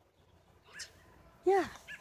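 Near quiet for over a second, broken by one faint short sound, then a boy's voice saying "yeah" near the end.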